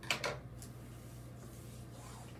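Two short clicks of scissors and craft materials being handled on a tabletop, near the start, then a steady low hum.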